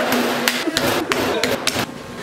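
Rapid open-hand slaps on a piece of raw chicken lying on a plate on a stainless steel counter, a fast run of smacks about four a second.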